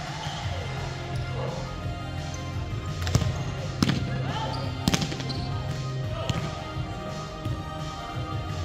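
A volleyball struck by players' hands and arms during a rally: four sharp hits, in the second half, ringing in a large gym hall. Background music and voices are underneath.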